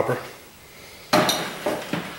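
Loose pieces of scrap metal clattering together on a workbench: a sudden metallic clatter about a second in that dies away.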